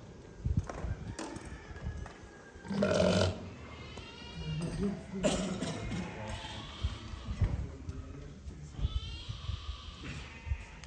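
Sardi ram making low grunts, the loudest about three seconds in and another just after five seconds, with scattered soft thumps and faint background voices.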